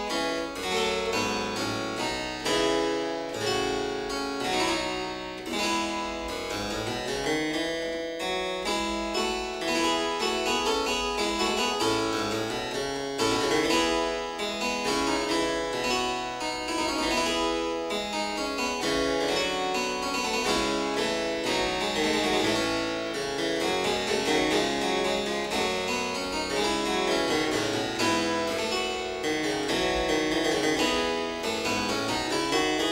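Harpsichord being played: a continuous piece of quick, closely packed plucked notes at a steady level.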